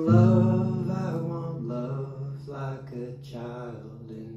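Male voice singing a folk song to a strummed acoustic guitar. A chord struck right at the start is the loudest moment and rings on, fading under the sung phrases.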